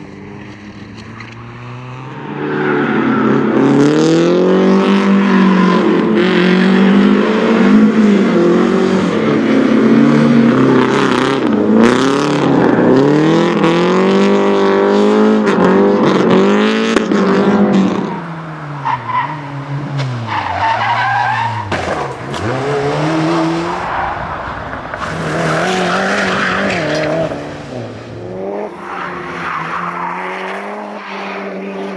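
Rally cars being driven hard through corners on a circuit: engines revving up and down through gear changes, with tyres squealing as they slide. The loudest, closest run fills the first half; later an engine rises and falls further off.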